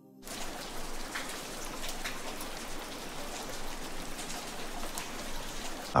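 Steady rain falling, an even hiss with a few sharper drops, beginning abruptly a moment in.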